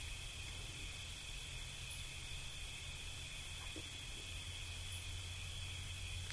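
Faint steady room tone of a recorded talk: an even hiss with a low hum and a thin, steady high-pitched drone.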